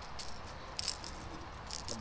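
Hard plastic topwater fishing lures being picked up and handled, their treble hooks and bodies clicking and rattling in a few short bursts.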